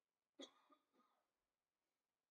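Near silence, broken once about half a second in by a brief, faint throat-clearing sound from a person.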